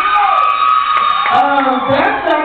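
A long, high-pitched whoop from someone in the crowd, held for over a second and falling slightly, over crowd chatter.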